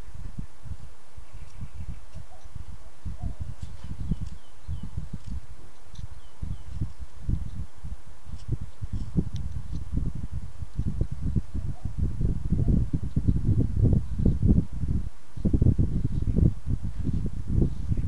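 Carving knife shaving small slices off a wooden figure held in the hand, taking off bandsaw marks: many short scraping strokes, sparse at first and coming faster and louder in the second half.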